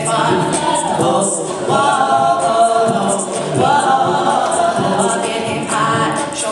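A cappella vocal group of men's and women's voices singing in close harmony through microphones, with held chords in phrases of a second or two.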